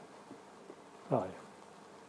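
Quiet room tone with a single short spoken 'oh', falling in pitch, about a second in.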